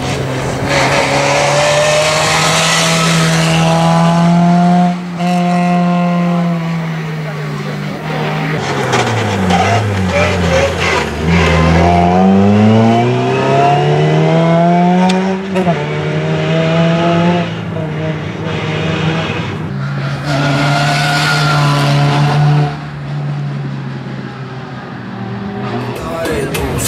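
Suzuki Swift Sport rally car's four-cylinder engine running at high revs at rally pace, dropping sharply in pitch about ten seconds in as the car slows for a bend, then revving back up through the gears.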